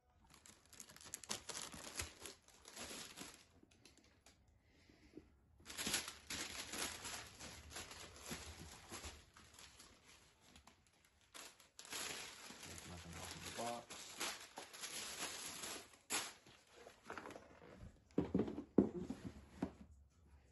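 Tissue paper crinkling and rustling in long bursts as it is pulled out of a shoebox and off a pair of suede sneakers, with a few dull knocks near the end as the box is handled.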